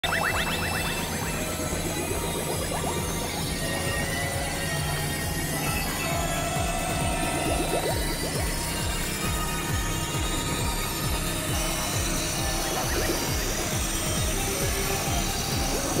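Experimental electronic noise music from synthesizers: a dense drone of steady low tones pulsing quickly under a noisy haze, with quick rising sweeps near the start and again about halfway through.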